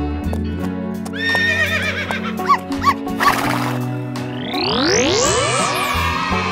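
A horse whinny sound effect, a wavering high-pitched neigh about a second in, over children's background music. Near the end a long rising glide sweeps up in pitch.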